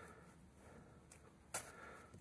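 Faint handling of the heater's coiled power cable as it is untied and unwound, with one short, sharp rustle about one and a half seconds in.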